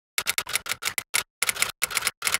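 Typing sound effect: a quick, uneven run of sharp keystroke clicks, about five a second, matching text being typed out letter by letter.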